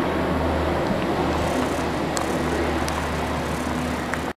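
Steady low mechanical hum of a running motor, even throughout, with a few faint clicks.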